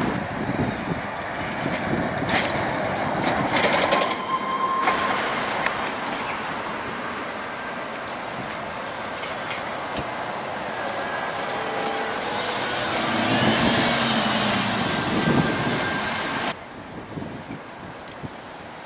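City buses driving past: engine and tyre noise from a green city bus, then an articulated biogas bus passing close, its sound swelling to a peak and fading as it goes by. A brief high squeal sounds in the first second.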